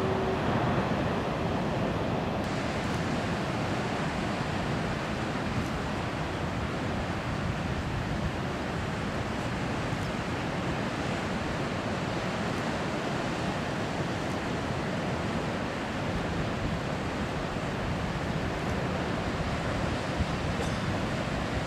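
Large ocean waves breaking, a steady rushing surf noise that carries on without a break.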